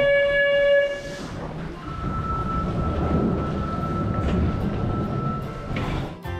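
Subway train at a station: a chime-like tone sounds for about a second at the platform doors, then a steady high whine over the low rumble of the train.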